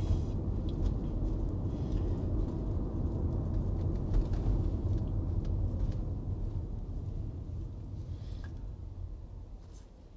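Low road and tyre rumble heard inside an electric car's cabin, with no engine note. It fades away over the last few seconds as the car slows almost to a stop.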